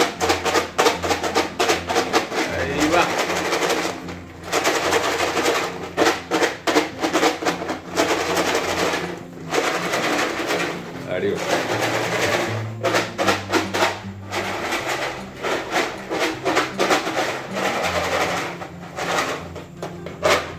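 Fried tapioca chips rattling inside a covered bowl as it is shaken to coat them with salt and masala. The rattle comes in long runs with short breaks.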